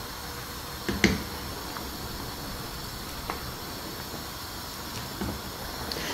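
Pot of rice boiling hard in salted water, a steady bubbling hiss. A single short knock about a second in and a few faint ticks.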